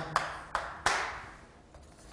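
Chalk striking and scratching on a blackboard as a character is written: three short sharp strokes, the last and loudest nearly a second in, each trailing off in a brief scratch.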